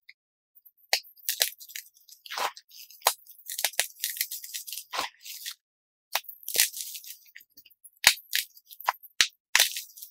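Dyed chalk cubes being crushed and crumbled between the fingers: irregular dry crunches and crackles, starting about a second in, with a short pause just past the middle.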